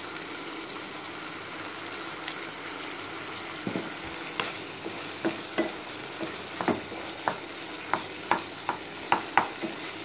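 Cauliflower frying in masala in a nonstick pan, with a steady sizzle. From about four seconds in, a stirring utensil scrapes and knocks against the pan at roughly two strokes a second.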